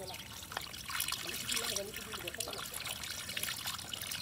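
Shallow water trickling and splashing as it runs down a mud bank into a pool, with faint voices in the background.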